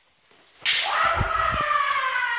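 A bamboo shinai strike cracks about half a second in, followed by a long kiai shout from a kendo fencer, held for over a second and sliding slightly down in pitch, with stamping footfalls on the gym floor underneath.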